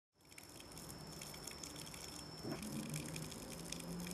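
Faint steady background noise with a low hum and a thin high-pitched whine that stops a little past halfway through.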